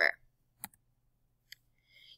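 Two short, sharp clicks about a second apart in an otherwise quiet pause: a computer mouse clicking as a presentation slide is advanced.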